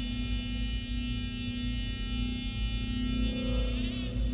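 Dramatic background score: a sustained, shimmering high tone held over a low steady drone, the high tone fading out near the end.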